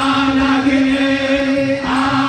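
A large group of men chanting an Eritrean Orthodox Tewahedo wereb hymn together, holding one long sustained note that shifts near the end.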